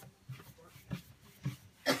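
A person coughs sharply once near the end, after a couple of softer short sounds from brushing wax across a painted wooden cabinet door.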